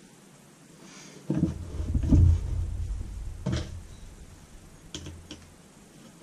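A camera's metal front assembly is handled and laid down on a desk. A low rumbling knock comes about a second and a half in, mixed with a few sharp clicks, and a couple of lighter clicks follow near the end.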